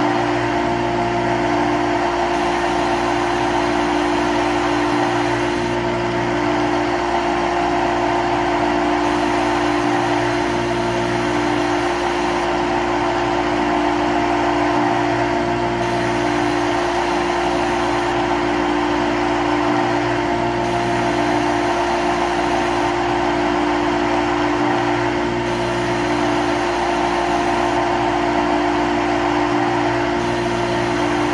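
Simulated CNC lathe sound from a simulator app: a steady machine hum with a fixed tone, the spindle running and the tool cutting. The sound repeats as a loop about every five seconds.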